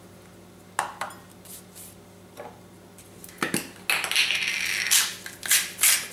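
A few light clicks and knocks as small containers are handled and set down, then a hand-twisted salt grinder grinding salt over the bowl in rhythmic scraping strokes, about two a second, starting near the end.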